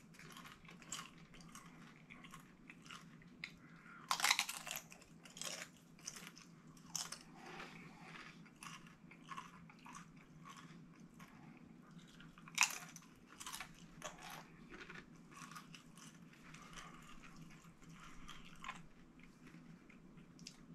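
Close-up crunching and chewing of tortilla chips: a string of small crisp crackles, with louder crunching bites about four seconds in and again about twelve and a half seconds in.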